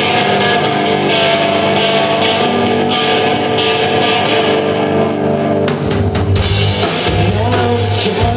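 Live rock band playing: electric guitar and bass guitar holding chords over a drum kit. About six seconds in there is a short run of sharp drum hits, followed by low bass notes and cymbal strikes.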